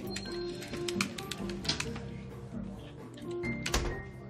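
Background music with held low notes, over quick, irregular clicks of a computer keyboard being typed on.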